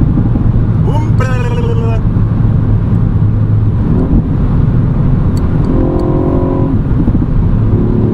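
Cabin sound of a Ford Fiesta ST Mk8 at motorway speed: a steady low drone from its 1.5-litre turbocharged three-cylinder engine, mixed with tyre and wind noise, as the car eases from about 165 to 150 km/h.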